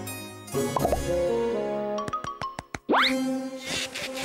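Cartoon background music with comic sound effects: about halfway through, a quick run of about eight evenly spaced clicks, then a fast rising whistle-like glide.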